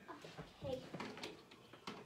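A quiet room with a brief faint voice and a few soft clicks from handling.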